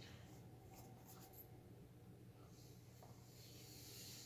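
Near silence, with faint rubbing and a few light clicks from a plastic tablet being handled and turned over in the hands.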